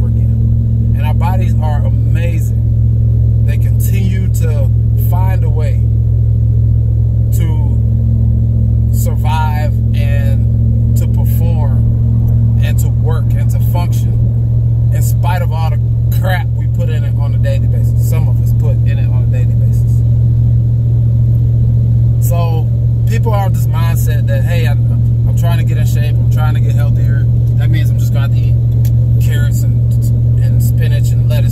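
Steady low drone of a pickup truck's engine and road noise inside the cabin while driving, under a man talking.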